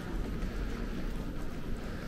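Steady background noise of a large, mostly empty airport terminal hall: a low rumble with a faint hiss above it and no distinct events.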